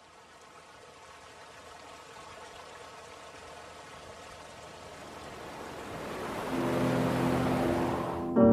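A rushing, surf-like noise swelling steadily louder, over faint held tones. About six and a half seconds in, a low sustained chord joins it, opening the soundtrack.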